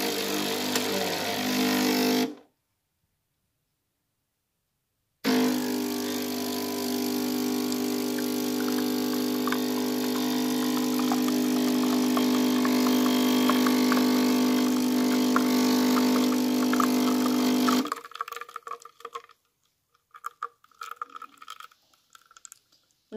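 Capsule espresso machine's water pump humming steadily as it forces water through the capsule and coffee streams into the mug. It runs briefly, stops for about three seconds, then runs again for about twelve seconds before cutting off, leaving faint dripping from the spout.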